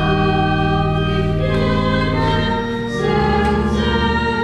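A hymn sung by a choir with organ accompaniment, in long held chords that change a few times.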